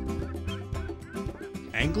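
Instrumental closing theme music with sustained chords and a quick, steady beat. A man's voice-over starts in over it near the end.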